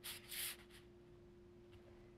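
Sharpie marker scratching on brown kraft paper in two quick marking strokes within the first half second.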